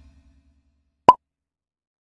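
A single short, sharp pop about a second in, in otherwise near silence.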